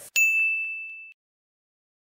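A single bright ding sound effect: one bell-like chime struck once, ringing and fading out about a second in.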